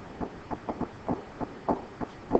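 Pen or stylus knocking and scraping on a tablet screen while handwriting, a quick irregular series of soft thumps.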